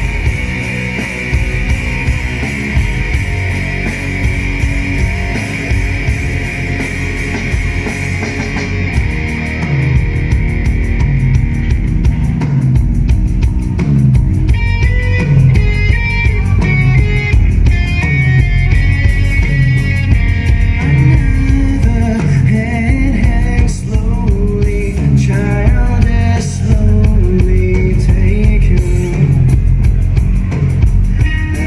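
Loud rock music with drum kit and guitar, a voice singing over it from about halfway through.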